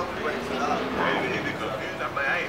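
A person's voice rising and falling in pitch, with no clear words.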